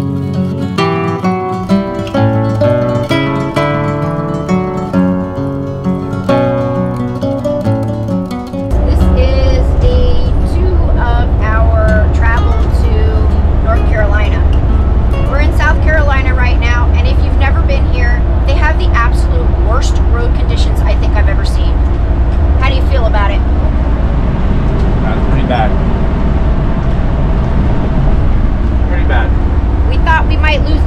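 Acoustic guitar background music for about the first nine seconds, then a sudden switch to loud, steady road and engine rumble inside a Thor Challenger gas motorhome's cabin at highway speed, with a woman talking over it.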